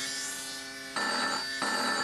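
Steady electric buzz of a tattoo machine, then a telephone starts ringing about a second in.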